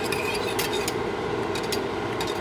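Wire whisk stirring hot milk and cornstarch custard in a stainless steel saucepan, its tines scraping and now and then clicking against the metal pan, over a steady hiss.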